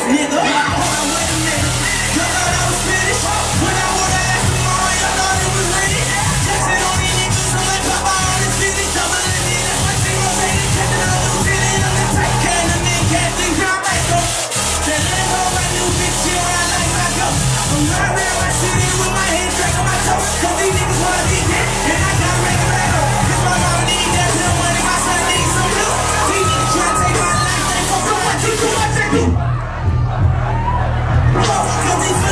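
Loud club music mixed live by a DJ over the venue's sound system, with a heavy bass beat. The high end of the mix briefly drops out just before the end.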